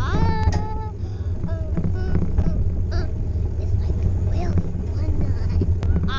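A young child's voice singing out wordlessly, with a long rising held cry at the start and another at the end and short sounds in between, over a steady low rumble of wind buffeting a bike-mounted microphone.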